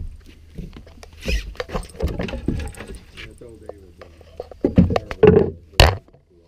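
Handling noise from a camera carried close against the body: scattered knocks and rubbing, ending in a loud sharp knock near the end. Faint talk runs underneath.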